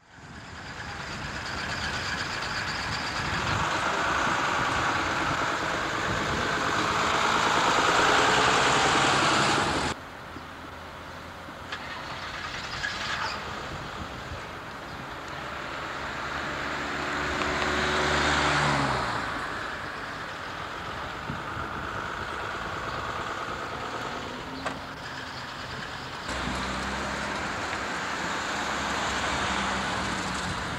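Diesel bus engines and road traffic, with a minibus engine revving up in rising pitch as it pulls away a little past halfway. The sound changes abruptly twice, about a third of the way in and near the end, at cuts in the footage.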